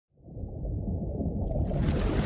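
Low, muffled underwater rumble of an intro sound effect, fading in at the start and growing brighter about a second and a half in.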